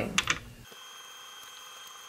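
Low-level room tone: a faint steady high-pitched electronic whine with light hiss, after a few brief soft clicks at the start.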